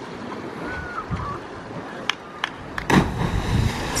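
Wind and sea noise, then about three seconds in a cliff diver hitting the sea: one sharp splash heard from high above on the clifftop.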